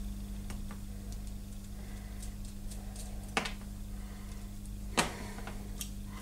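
A few faint ticks and two sharper clicks, about three and a half and five seconds in, from a small soldered part being handled between the fingers, over a steady low hum.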